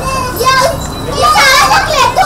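Young children's voices chattering, high-pitched and lively.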